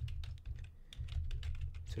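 Typing on a computer keyboard: a quick run of keystrokes entering a line of code, over a steady low hum.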